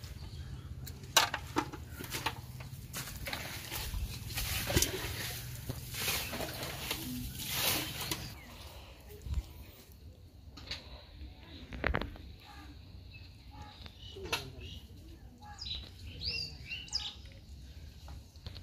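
Irregular rustling, clicks and knocks from hands handling a fishing trap in wet grass and a catch of prawns and small fish in a bowl, busier in the first half. A few short bird chirps near the end.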